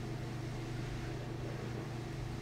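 A steady low hum of background room noise, with no other event.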